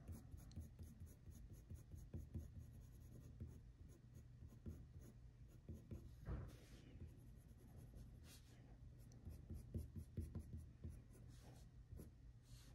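Faint scratching of a Faber-Castell graphite pencil on paper, many short, light strokes as fine detail is drawn around a face's eyes.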